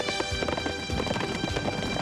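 Hooves of several galloping horses in a rapid, dense clatter, over background music.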